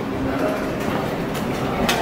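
Steady indoor background noise with a faint low hum and no distinct events, apart from a brief click near the end.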